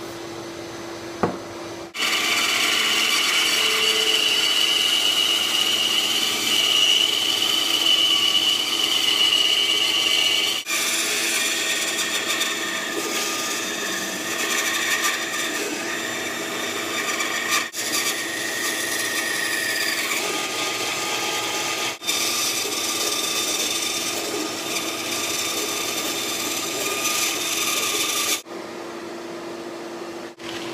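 Band saw running and cutting through a wooden board along a curved outline, a loud steady whine with the buzz of the blade in the wood, in several stretches with brief breaks. At the start and again near the end, only the steady hum of a shop vac remains.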